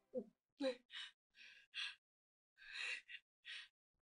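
A woman gasping and panting in pain: about eight short, breathy gasps, the first two carrying a voiced groan.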